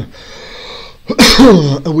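A man acting out a spluttering cough: a faint breathy intake, then about a second in a loud voiced cough that falls in pitch.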